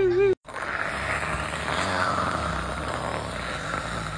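A steady, pitchless rushing noise with a low rumble underneath. It starts abruptly just after a short whimper is cut off and stops abruptly near the end.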